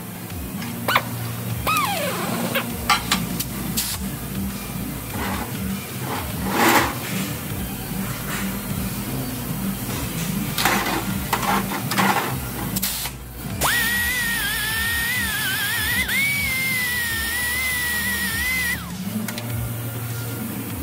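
Music with a wavering high note held for about five seconds in the second half, over scattered clanks and knocks of shop work and a low steady hum.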